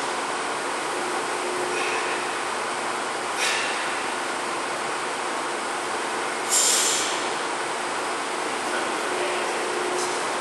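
Steady rushing background noise of a large hall, with two short sharp hisses, one about three and a half seconds in and a louder one about six and a half seconds in.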